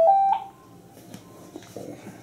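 Telephone ringtone: a short melody of electronic beeping tones stepping up and down, cutting off about half a second in, then a quiet room with a few faint ticks.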